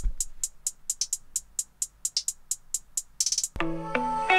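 Programmed drum-machine hi-hats playing alone: a steady pattern of short ticks about four a second, with a quick hi-hat roll near the end. About three and a half seconds in, the rest of the beat comes in under them.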